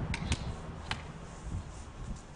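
Three light clicks of aluminium beer cans knocking together as they are handled, over a low steady rumble.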